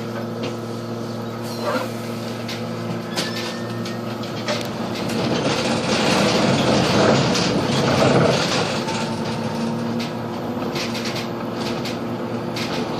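Interior of a moving Solaris Urbino 18 III Hybrid articulated bus: a steady drivetrain hum with scattered clicks and rattles, swelling louder for a few seconds around the middle.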